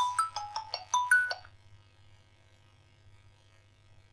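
A short inserted chime jingle: a quick run of about eight bright notes stepping up and down, ending about a second and a half in, then silence.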